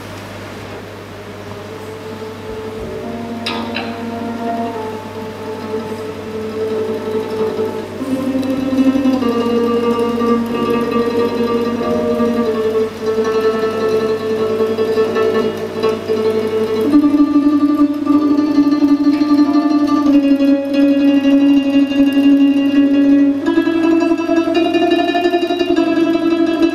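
Russian folk instrument ensemble of domras, a large balalaika, a guitar and an accordion playing a piece: plucked strings over held accordion chords. It starts softly and grows steadily louder, stepping up about eight seconds in and again after about seventeen seconds.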